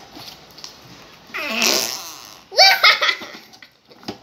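A squelching, fart-like noise about a second and a half in, from slime pressed into a small plastic cup, followed by children bursting into loud laughter.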